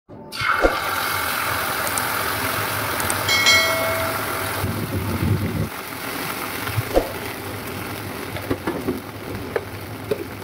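Ketchup sizzling in hot oil in a frying pan. It is loud at first, then dies down to scattered pops and crackles in the second half.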